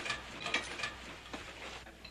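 Iron-barred jail cell door and its lock being worked: a run of small metallic clicks and rattles, with a few more near the end.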